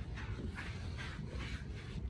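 Hands scrubbing a wet dog's coat in a bath, soft rubbing strokes about two a second.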